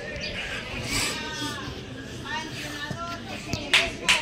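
Distant shouted calls from footballers and people around the pitch, drawn out and carrying across the field, over a steady outdoor background. A few sharp, loud knocks come near the end.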